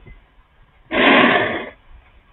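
A page of a spiral-bound exercise book being turned over: one loud papery rustle lasting under a second, about halfway through.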